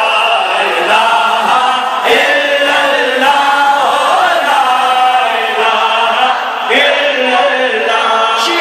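A naat sung in Urdu by a male reciter through a microphone, with a crowd of men chanting the refrain along with him in unison. The singing runs on in long held phrases, with a fresh phrase starting about two seconds in and again near the end.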